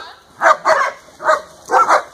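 A dog barking: four short barks spaced unevenly, each brief and sharp.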